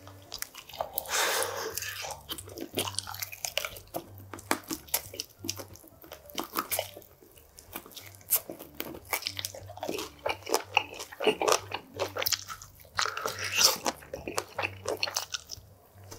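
Close-miked biting and chewing of oven-roasted chicken wings: wet, crunchy chewing with many sharp clicks. Louder bites come about a second in and again near thirteen seconds.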